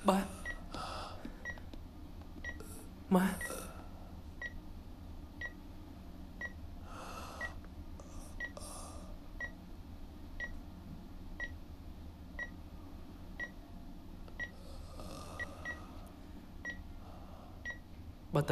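Hospital patient monitor beeping steadily about once a second at a single high pitch. A few soft human sounds come in between, with one brief louder one about three seconds in.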